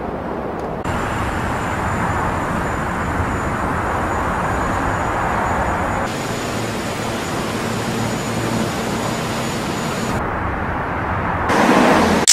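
A steady, even roar like distant traffic or aircraft, with a thin high steady whine over most of it; its character shifts a few times, and it swells to a louder burst near the end.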